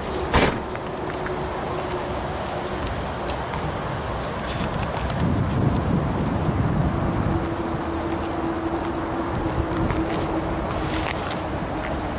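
The rear hatch of a 2004 Mazda Verisa hatchback is shut with a single thump about half a second in. After it comes steady outdoor background with a constant high-pitched insect hiss.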